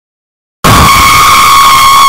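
Jumpscare sound effect: after dead silence, a very loud, harsh, shrill blaring tone starts suddenly about half a second in and holds steady.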